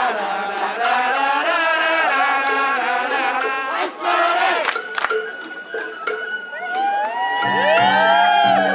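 A troupe of festival participants shouting festival chants together in unison over a crowd, the voices rising and falling. A high held note comes in about halfway, and near the end sliding calls and low pulsing music of the Sawara-bayashi festival band join in.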